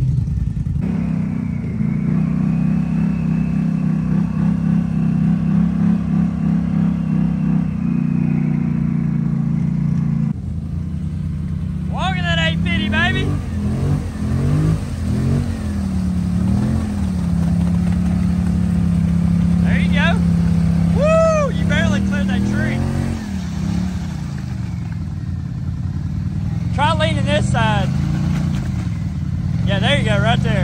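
Polaris Sportsman 850 ATV's twin-cylinder engine running hard in deep mud. It holds steady revs, steps its pitch a couple of times, then revs up and down from around the middle as the tyres churn. Short shouts from people come in a few times.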